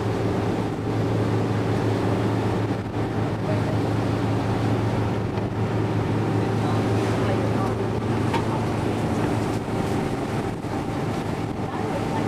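Boat engine running steadily while the boat is underway, a low drone with a hiss of wind and water.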